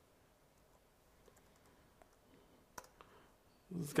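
Faint keystrokes on a computer keyboard as a terminal command is typed: a few scattered clicks, the sharpest about three-quarters of the way in. A man's voice starts just before the end.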